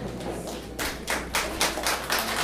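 The last acoustic guitar chord dying away, then scattered clapping from a small audience, starting a little under a second in.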